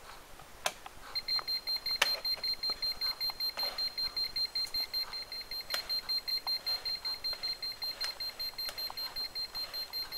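Alarm of a K-Moon GM3120 EMF meter beeping rapidly, a high-pitched beep repeating several times a second; it breaks off at the start and resumes about a second in. The alarm signals that the electric field reading from a nearby power cord has passed the meter's threshold. A few sharp clicks come from the meters being handled.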